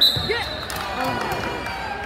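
Referee's hand slapping the wrestling mat once to call the pin, with a short high whistle blast right after it. Spectators' voices shout around it.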